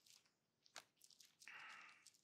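Near silence, with a faint click and then a brief soft rustle of Bible pages being turned.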